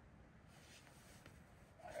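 Near silence: faint background noise, with a man's voice starting just at the end.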